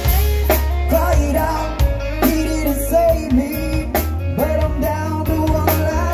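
Live rock band playing: drum kit keeping a steady beat under bass and electric guitars, with a melodic lead line bending in pitch over the top.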